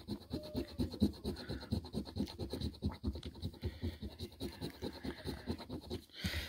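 A coin-like disc scraping the coating off a scratch-off lottery ticket in quick, even back-and-forth strokes, several a second.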